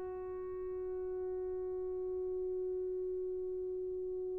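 A grand piano string kept sounding by an EBow: one steady, almost pure drone held without a break, its faint overtones slowly fading.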